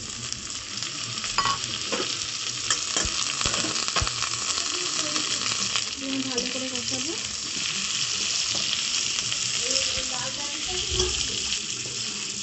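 Chunks of raw jackfruit sizzling in hot oil and spice paste in a steel wok, stirred with a metal spatula that scrapes and clicks against the pan.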